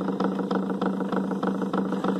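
Homemade flywheel rig running: a small electric motor turns a magnet-fitted washing-machine wheel with a Lada flywheel on top. It gives a steady hum with a fast, even ticking rattle.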